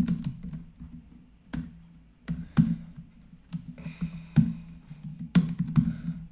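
Typing on a computer keyboard: irregular keystrokes in short runs with gaps between them, a few of them sharper and louder than the rest.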